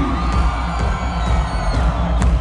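Loud electronic dance music from a DJ set over a large sound system, with heavy steady bass and gliding synth lines, and a crowd cheering along.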